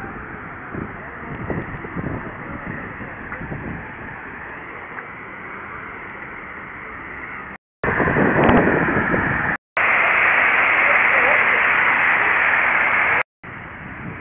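Outdoor park ambience picked up by a tiny camcorder's microphone: a moderate background with faint distant voices. After a cut about halfway through, a loud, steady rushing hiss runs for about five seconds, broken by brief dropouts at the edits.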